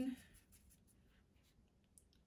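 Faint, scattered soft taps and scratches of a watercolour brush mixing paint in a palette and dabbing it onto paper.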